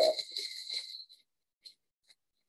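A paper towel being wiped across a work tabletop to mop up sprayed water. It makes a short hissing rub for about the first second, then near quiet with a few faint ticks.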